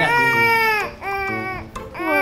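A baby crying in two long, high wails, the second shorter and weaker: a cry of thirst and hunger for his missed milk.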